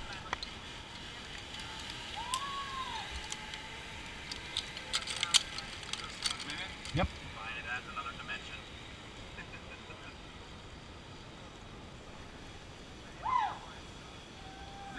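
Zip-line trolley running along a steel cable with a steady hiss that fades in the second half, with scattered clicks and a thump about seven seconds in. There is a short rising-and-falling call about two seconds in.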